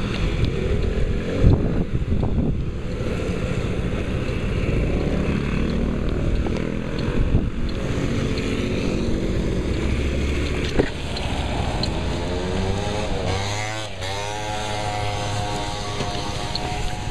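Motor scooter engine running on a street, with two sharp knocks, one about a second and a half in and one near eleven seconds; near the end the engine note rises and falls as it is revved.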